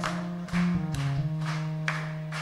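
Instrumental band music: an acoustic guitar and keyboard holding low sustained notes, with sharp strokes about every half second.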